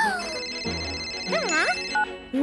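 A cartoon phone ringtone sounding as an incoming call, heard as steady high tones over background music. Short wordless, pitch-gliding cartoon voice sounds come at the start and again about a second and a half in.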